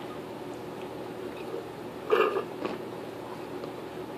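A person taking a drink: one short swallow about two seconds in, then a fainter one, over a steady low room hum.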